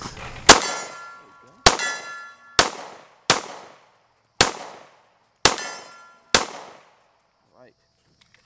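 Seven shots from a SIG P220 .45 ACP pistol, fired unevenly about a second apart until the seven-round magazine is empty. Several shots are followed by a metallic ring.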